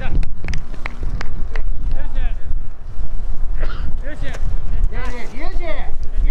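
Players shouting and calling out in celebration of a goal, in several high, wavering bursts, over heavy wind rumble on the microphone. A few sharp knocks sound in the first second and a half.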